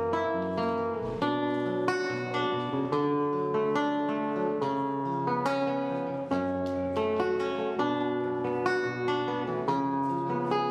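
Nylon-string classical guitar played fingerstyle, plucked notes and chords following one another in a steady flow.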